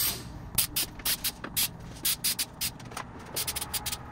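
3M Super 77 aerosol spray adhesive hissing from the can in many short, quick bursts, in groups with brief pauses between them.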